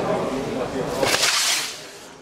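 RESTUBE rescue buoy fired by its pull trigger: its 16 g CO2 cartridge empties in a sharp rush of gas about a second in, lasting well under a second, as the buoy inflates and unfurls.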